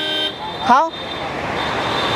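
A short vehicle horn toot at the very start, then the noise of a passing vehicle swelling steadily louder.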